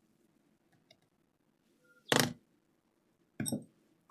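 Near silence, broken by a single short knock about halfway through and a fainter brief sound near the end, as laptop hardware is handled during reassembly.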